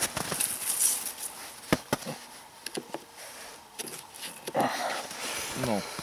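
Handling noise from opening a wooden beehive: rustling, with two sharp knocks close together about two seconds in.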